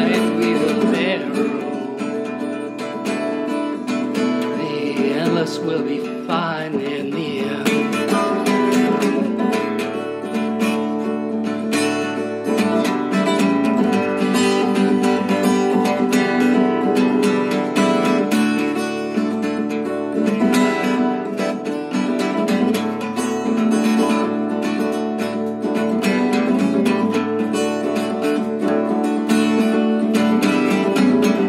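Acoustic guitar strummed and picked, the instrumental close of a song, with the singer's last words trailing off in the first second.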